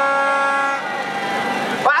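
A steady horn note stops a little under a second in. A noisy wash of crowd shouting follows for about a second, answering the speaker's call.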